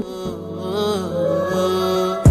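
Background music: a slow, wavering melody over sustained tones.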